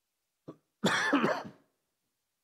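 A person clearing their throat: a short catch about half a second in, then one rough, voiced clearing lasting under a second.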